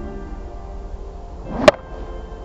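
A golf club swishing down and striking a ball once, a sharp crack near the end, over steady background music.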